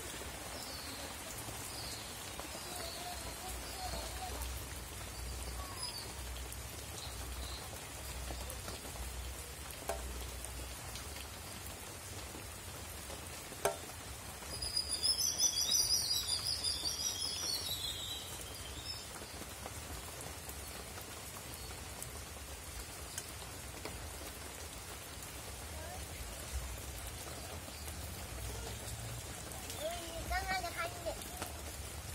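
Steady outdoor hiss like light rain, with birds calling faintly. About halfway through, a bird sings a quick, high warbling phrase that lasts about four seconds and is the loudest sound.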